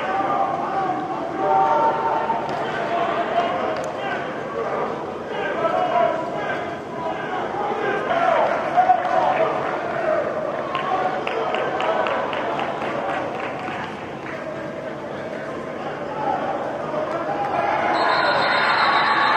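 Several men shouting and calling out encouragement over a football agility drill, with hand claps and quick footfalls on the turf.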